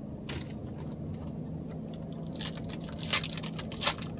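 Trading cards being handled: a few short scraping rustles over a steady low hum.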